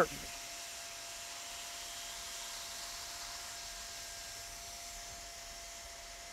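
Hand-held hot-air roofing welder running steadily as a PVC membrane seam is welded: an even hiss of blown air with a faint steady whine from its blower.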